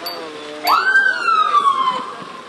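Escort vehicle's siren sounding one wail: about two-thirds of a second in it rises sharply in pitch, then slowly falls, loud.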